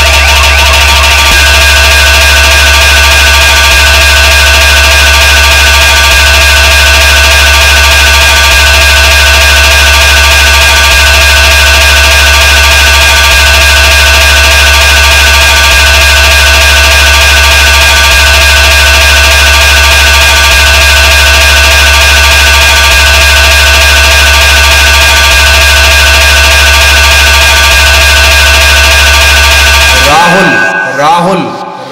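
Loud, heavily compressed hard-trance DJ track: a sustained droning tone over a constant deep bass, with a fast pulsing note above it.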